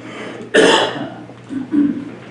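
A person coughing: one hard cough about half a second in, then a second, shorter cough near the end.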